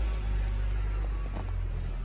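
Steady low rumble of an idling vehicle engine.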